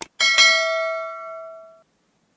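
Sound effect of a subscribe-button animation: a click, then a notification bell struck twice in quick succession, ringing on for about a second and a half before cutting off.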